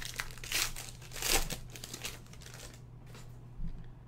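Foil wrapper of a 2016 Spectra football trading-card pack crinkling and tearing as it is ripped open by hand, in quick crackling bursts over the first two and a half seconds.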